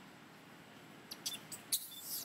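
A young macaque giving a few short, high-pitched squeaks and clicks starting about a second in, the last one the loudest.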